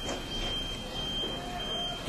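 A thin, steady high-pitched whine over faint background hiss.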